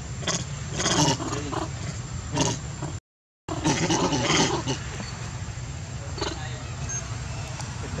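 Long-tailed macaques giving short, harsh calls in about five separate bursts, over a steady low background hum. The sound cuts out for about half a second around three seconds in.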